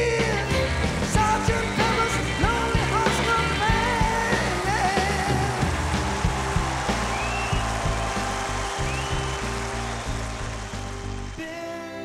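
Live orchestra with rock band, brass and vocals playing loudly. Singing and drum hits come over the full band for the first few seconds, with trombones in the mix. About eleven seconds in the music drops suddenly to soft, held orchestral chords.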